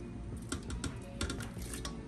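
A run of quick, light clicks and clinks of a metal utensil against a pot as shredded chicken is put back into the broth, starting about half a second in.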